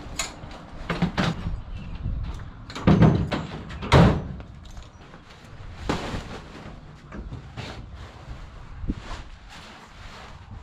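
Knocks and clunks of a metal paramotor frame being loaded into a pickup truck bed, the loudest two about three and four seconds in. Later come smaller knocks as gear is handled at the truck's open rear door.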